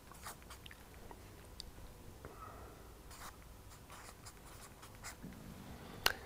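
A marker pen writing a word on flip chart paper: a series of faint, short scratching strokes.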